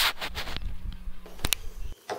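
Handling noise on a handheld action camera's own microphone: a low rumble and a faint steady hum, with a few sharp clicks, the sharpest about one and a half seconds in.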